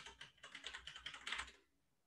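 Faint computer keyboard typing, a quick run of key clicks that stops about a second and a half in: a password being entered at a sign-in screen.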